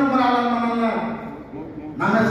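One long drawn-out voiced call held at a nearly steady pitch, fading out about a second in, followed by quieter murmuring voices.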